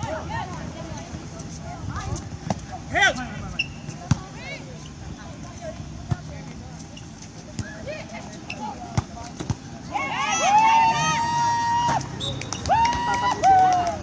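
Volleyball rally: sharp slaps of hands and forearms striking the ball every second or so, with players' and onlookers' voices in the background. For the last four seconds there are loud, long, high-pitched shouts and cheers.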